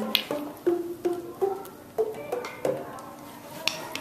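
Classroom percussion instruments struck in a series of short, dry notes of differing pitch, about two a second.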